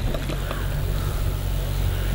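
A steady low hum with a haze of background noise under it, even in loudness, with no voice.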